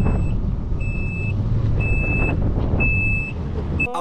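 Yamaha jet ski running slowly on the water, a steady engine rumble with water and wind noise, over a high electronic beep about half a second long that repeats roughly once a second.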